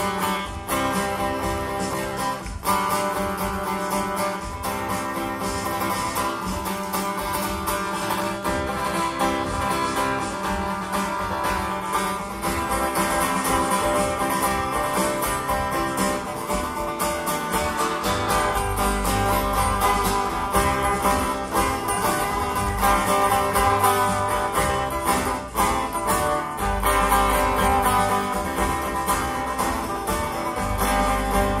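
Live instrumental passage on acoustic guitars, picked and strummed together. It was taped from the audience in a concert hall. A heavier low end comes in about eighteen seconds in.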